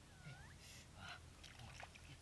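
Faint, short squeaky animal call that dips and then rises in pitch, followed by soft sloshing of shallow muddy water around a person wading.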